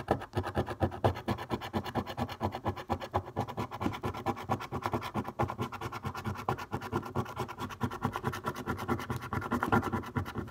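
A coin scraping the latex coating off a scratchcard: rapid, continuous rasping strokes, several a second, with no break.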